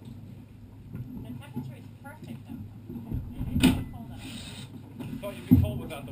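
Faint background voices over a low steady rumble, with a sharp knock about three and a half seconds in, a short hiss just after it, and a thump near the end.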